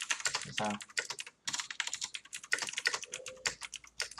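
Fast typing on a computer keyboard: a quick, dense run of keystrokes with a couple of brief pauses.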